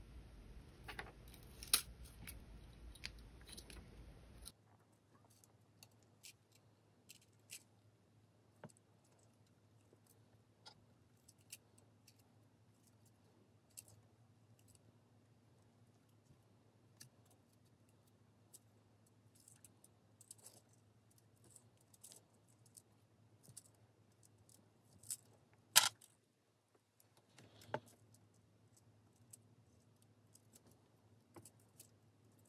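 Faint, scattered clicks and ticks of fine copper wire being woven by hand around a bundle of thicker copper wires, with one sharper click near the end.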